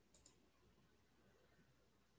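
Near silence, with two quick faint clicks close together just after the start: a computer mouse clicked twice.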